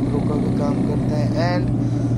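Motorcycle engine running steadily at cruising speed with wind noise, under a man's talking.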